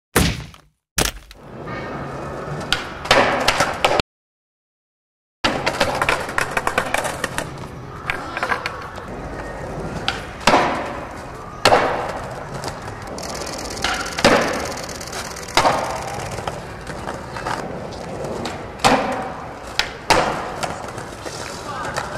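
Skateboard wheels rolling over stone paving, broken by repeated sharp cracks and slaps of the board popping and landing. The sound drops out completely for over a second about four seconds in.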